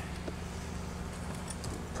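A steady low mechanical hum, with a few faint light clicks about one and a half seconds in as a plastic jug is handled and set down.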